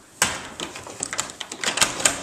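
A sudden clack, then a quick run of clicks and knocks from a microwave being handled: its door and buttons tried. It turns out to be broken.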